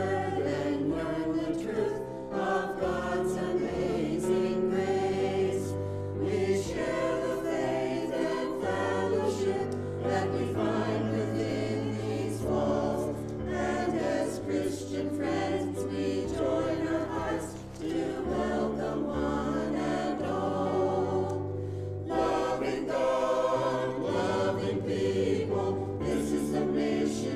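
Mixed church choir of men's and women's voices singing together, a steady unbroken stretch of a choral piece.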